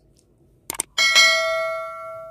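Subscribe-button sound effect: two quick mouse clicks, then a bright notification-bell ding about a second in, struck twice in quick succession and ringing out as it fades.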